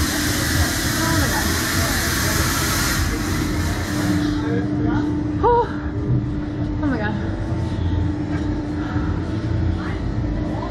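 Steady low mechanical hum of amusement-ride machinery, with a hiss that dies away about four seconds in. There are a few short vocal sounds from the riders.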